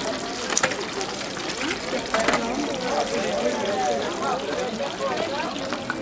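Steady sizzling hiss of a deep fryer's hot oil, with indistinct voices in the background and a couple of light clicks, one about half a second in and one about two seconds later.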